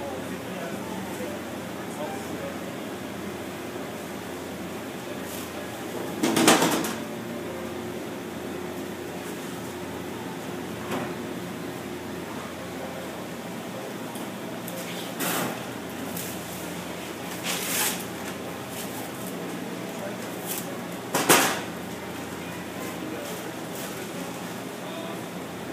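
A butcher's hand knife cutting and pulling a hanging carcass apart, with a few short, sharp sounds of the cuts, loudest a little after six seconds and again around twenty-one seconds, over a steady low machine hum in the cutting room.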